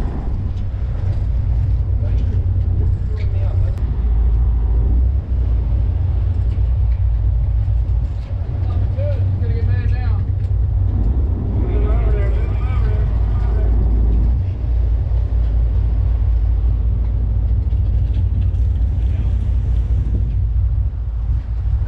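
Offshore sportfishing boat's engine running with a loud, steady low rumble.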